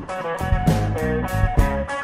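A small rock band playing: a semi-hollow electric guitar picks a melodic lead line over a steady drum beat with cymbal strokes about twice a second.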